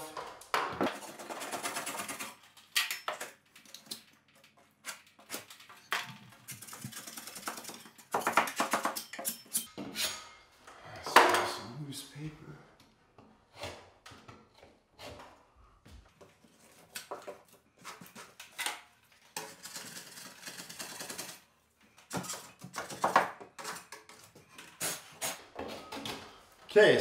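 Steel putty knife scraping and picking at torn drywall paper and crumbled gypsum in a blown-out ceiling corner, in irregular scrapes and clicks with short pauses, clearing the loose material before the corner is filled with mud.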